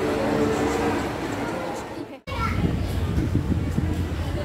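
Background noise of a busy indoor space with a steady hum. It breaks off abruptly about two seconds in, giving way to a low steady rumble with children's voices.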